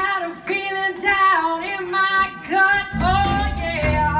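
A woman singing a held, melodic line into a microphone, nearly unaccompanied for about three seconds, before the guitar and band come back in under her voice near the end.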